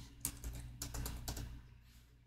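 Computer keyboard typing: a quick run of light keystrokes that stops about one and a half seconds in.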